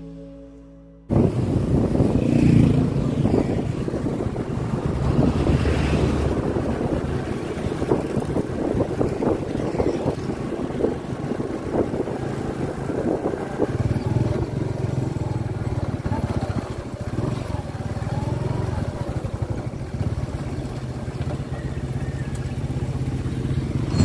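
Motorcycle running steadily on the open road, heard from the bike being ridden, with heavy wind rush on the microphone. The first second holds the fading tail of acoustic guitar music.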